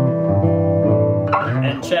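Gibson Chet Atkins SST solid-body acoustic-electric guitar being played: plucked notes and chords ringing out, changing a few times.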